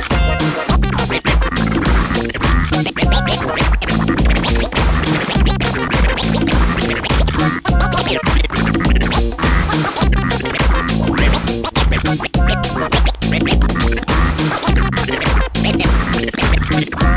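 Hip hop DJ mix: a steady, bass-heavy beat with turntable scratching cut in over it.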